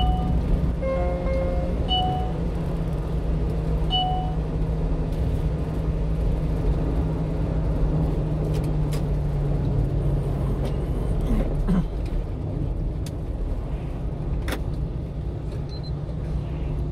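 Steady low engine and road rumble of a 1-ton truck driving along, heard inside the cab. A few short electronic beeps sound in the first four seconds, and a few faint clicks come later.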